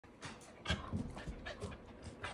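An Akita growling and huffing at a pestering Corgi: a string of short, irregular growls mixed with panting, loudest just under a second in.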